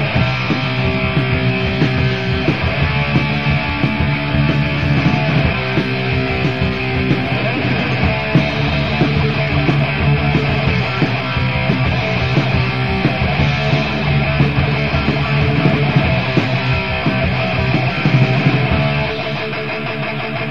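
Heavy metal band playing an instrumental stretch: two distorted electric guitars, bass guitar and a drum kit, on a 1984 rehearsal-room demo tape recording with a dull top end. The music drops slightly in level near the end.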